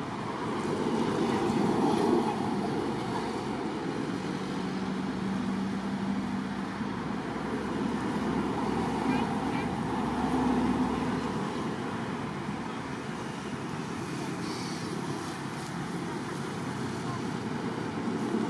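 Outdoor background noise of indistinct voices mixed with a steady hum of motor traffic, with a low engine-like drone from about four to seven seconds in.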